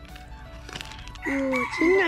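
A rooster crowing, starting a little past the middle, with a person starting to talk over its end.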